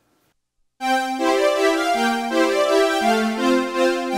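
Roland Juno analog polysynth playing a strings patch: sustained polyphonic string-pad chords that start about a second in and move to new chords every second or so.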